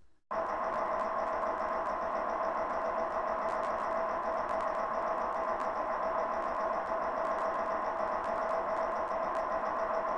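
A steady electronic drone, two held tones over a hiss, that starts suddenly just after a brief moment of silence and holds without change.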